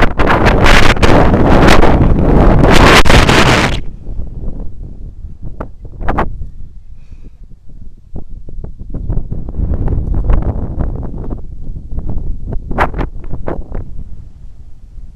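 Wind buffeting a YI action camera's microphone as a rope jumper swings through the air on the rope. It is loud for the first four seconds, eases off, and swells again about nine seconds in, with a few sharp clicks in between.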